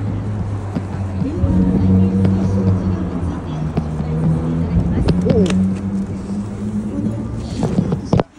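Busy street sound: voices mixed with a steady low drone that shifts pitch partway through. There is a short burst of knocking noise right at the end.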